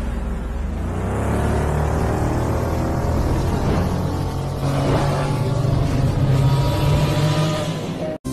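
Sci-fi intro sound effect of a futuristic vehicle: a loud engine-like roar over a deep rumble, its pitch rising as it speeds up.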